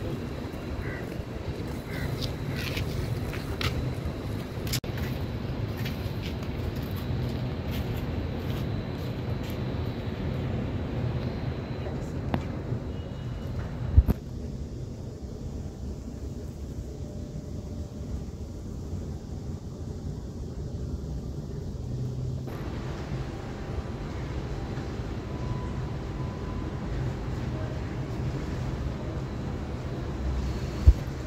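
Outdoor street ambience: a steady low hum of traffic with faint, indistinct voices. A single sharp knock comes about 14 seconds in, where the background sound changes.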